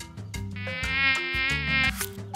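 Cartoon mosquito buzz sound effect: a wavering, whining drone that starts about half a second in and stops just before the end, over light background music.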